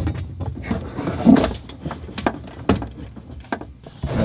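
Hands working plastic trim and wiring in a car's wheel well: a run of irregular clicks and knocks with rustling.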